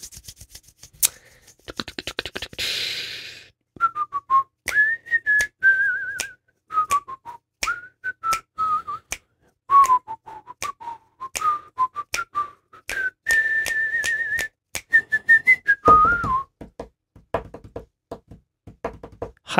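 A person whistling a wandering tune, with a warbling trill about two thirds of the way in, over scattered sharp clicks.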